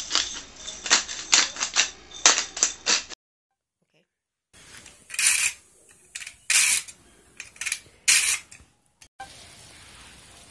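A hand-twisted spice mill grinding, a quick run of crunchy clicks for about three seconds. After a short silence, about four separate rasping strokes of a whole nutmeg scraped across a fine grater.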